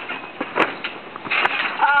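Trampoline being landed on after a backflip: a few sharp clicks and knocks, then a short rush of noise from the mat and frame. A voice starts saying 'Oh' near the end.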